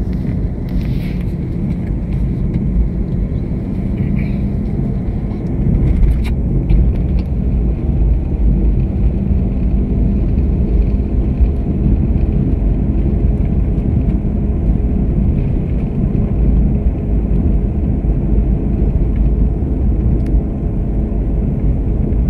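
Steady low rumble of a Toyota car's engine and tyres heard from inside the cabin while driving, getting a little louder about six seconds in.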